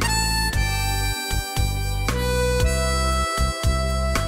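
Harmonica solo of long held notes, changing pitch every half second to second and a half, over a backing band with bass.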